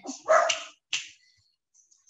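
A dog barks once, loudly, followed by a short faint sound about a second in.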